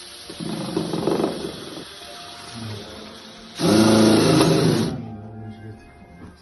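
Cordless power drill running in two spells, driving a screw into the wooden doorpost to fasten a mezuzah case. The second spell, a little over halfway through, is the louder, and the drill stops about a second before the end.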